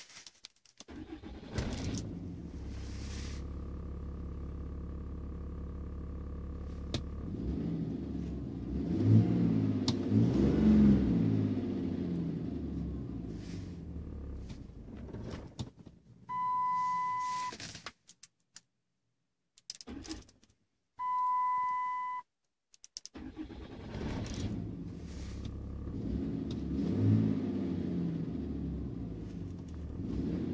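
Dodge Ram's 6.7 Cummins inline-six turbo-diesel heard from inside the cab: it starts about a second in, runs, rises in revs, then dies away about halfway through. Two steady electronic beeps of about a second each follow, with a few clicks between them, and the engine starts again and runs to the end. It is the stall that the owner links to dropping fuel rail pressure.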